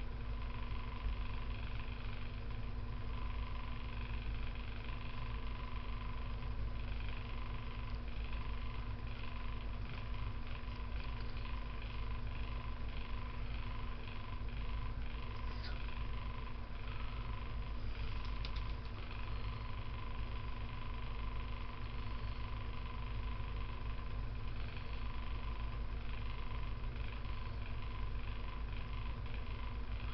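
Box fan running: a steady electric hum over a low rumble, unchanging throughout, with a few faint small rustles around the middle.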